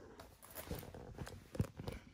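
Faint handling noise from a handbag and its metal strap fitting being passed over and worked: light rustling with a few small clicks and knocks, the sharpest about a second and a half in.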